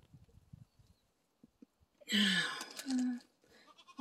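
Goat bleating twice about two seconds in: a longer call falling in pitch, then a short second call.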